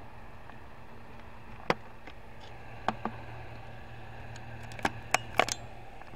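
Handling noise from a plastic light-up makeup mirror: a few sharp clicks and taps as it is held and turned, most of them bunched near the end, over a steady low hum.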